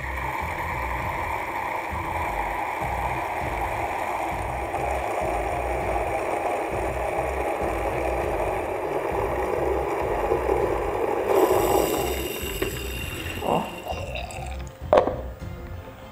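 Coffee forced under plunger pressure through the single small hole of an AeroPress pressure filter (TopBlend AEX): a steady hiss for about twelve seconds that then stops, followed by two knocks. Background music with a steady beat plays under it.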